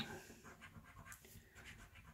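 Faint scratching of a coin rubbed across the scratch-off panel of a paper lottery scratchcard, in short, irregular strokes.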